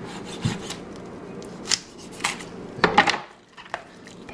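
Boning knife scraping and cutting against bone and joint in a raw turkey as the wing joint is worked free: a few short scrapes and clicks, the loudest about three seconds in.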